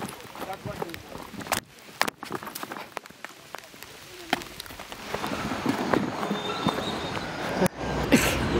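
Footsteps walking over a steady hiss of rain, heard in several short clips cut together; the hiss grows louder in the second half.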